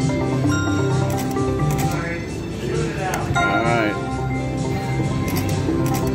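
Casino slot machines giving out electronic chimes and jingles, a run of held electronic tones that change in pitch, as a mechanical-reel Bally slot machine is spun twice. A voice-like, wavering sound comes in about three seconds in, over the casino floor din.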